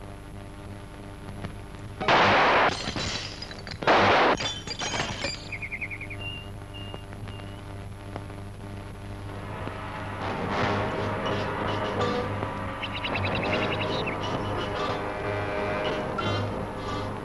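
Two pistol shots about two seconds apart, with glass breaking as bottle targets are hit. Film score music runs underneath and grows louder in the second half.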